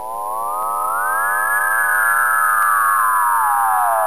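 A synthesized, theremin-like sound effect: a smooth electronic tone trailing many echoes, gliding up in pitch, holding high around the middle, then slowly sliding back down.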